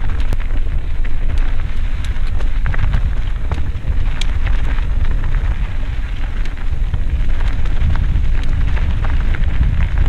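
Mountain bike coasting down a dirt singletrack: a steady wind rumble on the microphone, with the tyres crunching over loose dirt and frequent small clicks and rattles from the bike.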